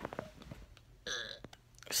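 A few soft handling clicks right at the start, then about a second in a short, quiet vocal sound from a man, under half a second long.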